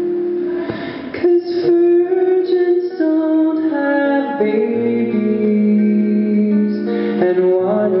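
Solo male singer performing live with a strummed acoustic guitar, singing long held notes over the chords.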